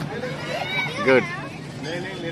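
Children's voices and chatter at play around an inflatable slide, with a man's loud shouted word about a second in.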